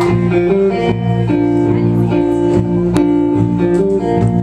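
Live rock band playing an instrumental passage: electric guitars and bass holding chords and notes over drums, with several sharp drum or cymbal hits.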